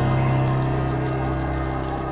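Background music: one held chord over a steady low note, sustained without change.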